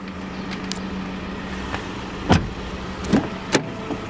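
A steady low hum from the parked car with a steady background haze, and a handful of short knocks and clicks scattered through it. The loudest knock comes about two and a half seconds in.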